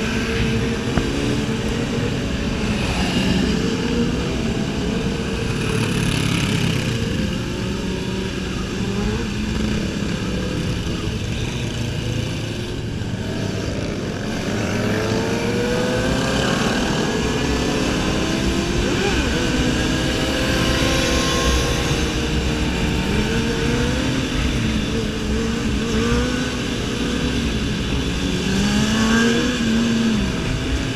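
A pack of sport motorcycles running together, several engines revving up and down through the gears at once, their pitches gliding and overlapping over a steady low rush.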